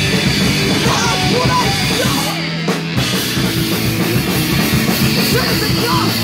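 Finnish hardcore/crust punk band playing live and loud: distorted electric guitars, bass and pounding drums. About halfway through, the drums and cymbals drop out for a moment over a held low note, then the full band comes crashing back in.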